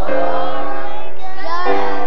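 Children's choir singing a Christmas song, with held notes and sliding changes of pitch.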